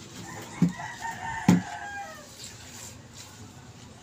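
A rooster crowing once in the background for about two seconds, while two dull knocks sound on a floor tile as it is tapped down into its mortar bed, about half a second and a second and a half in.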